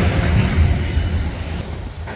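Wind buffeting a phone's microphone, a loud, uneven low rumble, with rustling handling noise as the phone is turned around.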